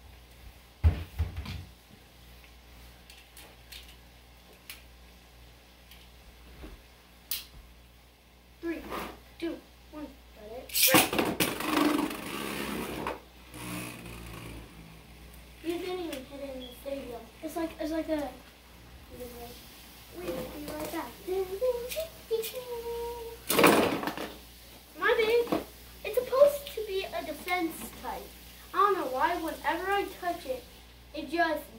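Beyblade spinning tops launched into a plastic stadium: a loud rush of whirring and clattering about eleven seconds in, lasting about two seconds, with another sharp clatter later on. Children's voices are heard around it.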